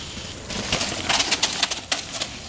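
Mountain bike riding over a dry, leaf-strewn dirt trail: irregular crackling and rattling of tyres on leaves and twigs and the bike jolting over the ground. It starts about half a second in and gets busier toward the end.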